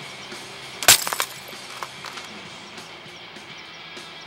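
A sharp crash about a second in, followed by a few quick smaller clatters, over background music.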